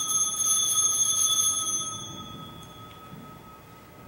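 Altar bell rung at the elevation of the consecrated host: a bright, shimmering chime for about two seconds, then its ringing dies away slowly.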